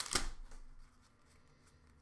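Hockey trading cards being handled and slid against one another: a short, faint rustle in the first second, then near silence.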